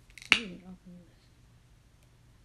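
The orange plastic flip-top cap of a shampoo bottle snaps open with one sharp click, followed at once by a woman's soft 'ooh'.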